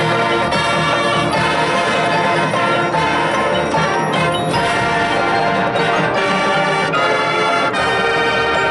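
High school marching band playing its field show: brass and woodwinds sound sustained chords over mallet percussion from the front ensemble.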